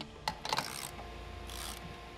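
CNC router working on a wooden sign board: a low steady machine hum with a click near the start and two short hissing scrapes, about half a second and a second and a half in.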